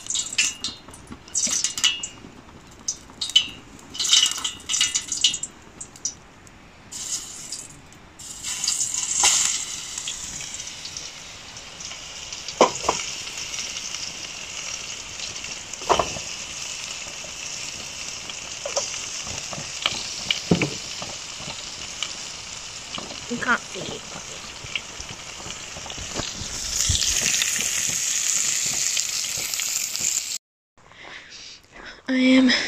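Chops sizzling in a frying pan on a portable gas camp stove: a steady hissing sizzle that grows louder near the end. Sharp crackles and clicks come before it in the first several seconds.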